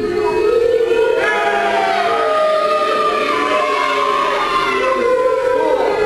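A crowd of children in a hall yelling together in long, drawn-out calls, many voices overlapping in a steady wall of sound.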